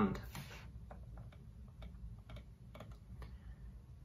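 A man's voice finishing a sentence, then faint scattered clicks, about a dozen over three seconds, at an uneven pace over quiet room tone.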